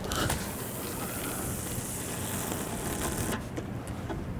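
Fishing line hissing off a spinning reel's spool as a cast flies out, cutting off suddenly about three seconds in, followed by a few faint clicks, over a low steady rumble.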